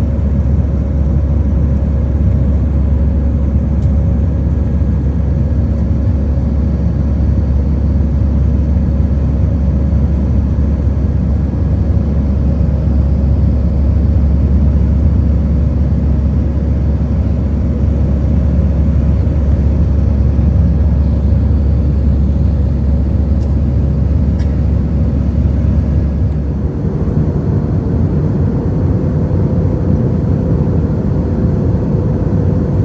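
Jet airliner cabin noise during the climb after takeoff: a steady, loud low rumble of the engines and airflow heard from a seat over the wing, with a faint steady hum above it. A few seconds before the end the deepest part of the rumble drops away and the sound thins slightly.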